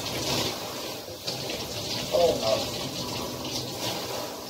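Water running from a handheld shower head and splashing steadily into a bathtub.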